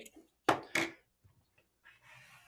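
A short vocal sound, a brief murmur or exhale, about half a second in, followed by a few faint small clicks from hands working on a camera rig.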